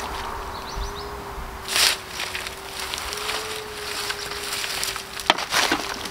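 Garden fork digging and scraping through compost, with one short rustling scrape about two seconds in and a couple of sharp knocks a little after five seconds, over a faint steady hum.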